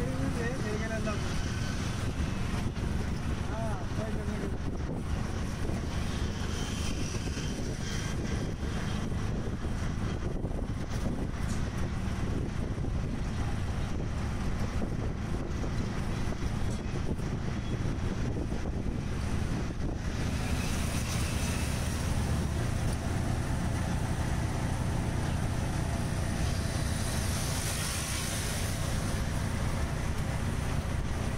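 Auto-rickshaw engine running steadily as it drives through city traffic, heard from inside the open cab, with road rush and wind on the microphone. The wind noise grows stronger from about two-thirds of the way in.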